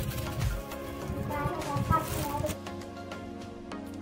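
Background music with steady tones and a regular light beat.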